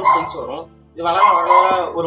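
A man talking in Tamil, with a short pause just before the middle.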